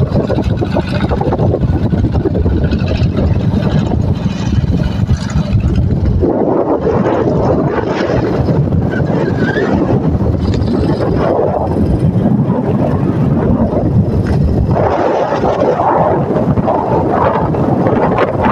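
Wind buffeting the microphone, a loud rough rumble that turns higher and hissier about six seconds in.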